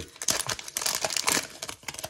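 Plastic trading-card pack wrapper crinkling and tearing as it is ripped open by hand, in irregular crackles.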